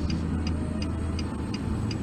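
A car's indicator relay ticking evenly, about three ticks a second, over the steady low hum of the engine, heard inside the cabin.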